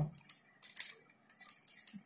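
Light, irregular clicks and rustles of a hand shaking a thermostat's temperature sensor probe and its thin cable to cool it.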